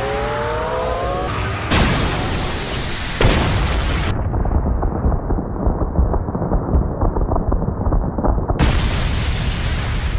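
Anime explosion sound effect: a rising whine, then from about two seconds in a long, loud blast and rumble full of crackles as an energy beam strikes the ground.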